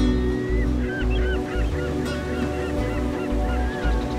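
Background music with birds calling over it: a flurry of short, curving chirps from many birds begins about a second in and carries on to near the end.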